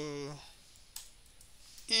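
Speech trailing off at the start and starting again near the end, with a single sharp computer-keyboard key click about a second in while code is being typed.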